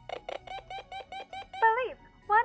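Electronic scanner sound effect from a toy detector: a quick, even run of about ten short chirps, ending near the end in a louder tone that rises and falls.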